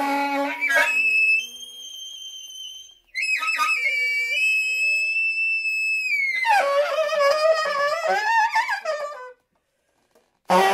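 Alto saxophone played solo in very high registers. A sudden shrill high note opens, then fades to a softer held high tone. After a brief gap a long loud high note comes in, and about six and a half seconds in it drops to lower, wavering tones that break off abruptly near the end.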